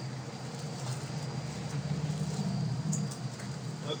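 Quiet outdoor ambience of a standing crowd: a steady low hum under faint rustling and shuffling.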